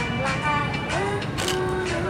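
Children's hand-washing song playing: a sung melody gliding between notes over instrumental backing with a beat, and a low steady rumble underneath.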